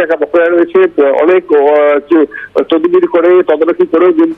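Speech only: a man talking continuously.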